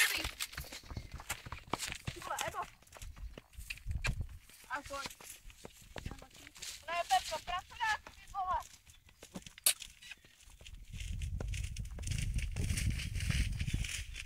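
Faint voices now and then over scattered small clicks, then wind rumbling on the microphone for the last few seconds.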